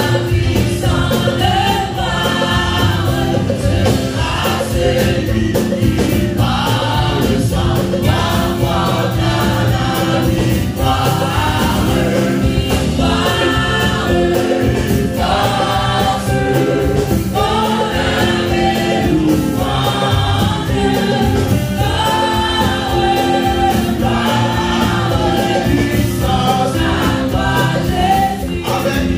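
Live gospel worship music: a choir singing together with a band of drum kit and guitar, continuous.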